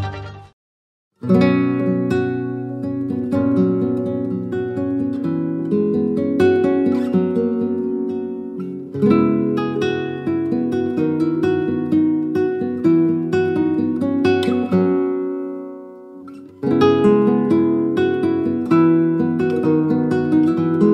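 Background music on acoustic guitar, plucked and strummed. It starts about a second in, fades down briefly near the three-quarter mark, then comes back in.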